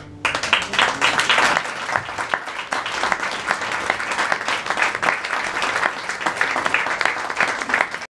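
Applause from a small club audience breaks out abruptly about a quarter of a second in. It is loudest over the first second or so, then carries on steadily at a slightly lower level.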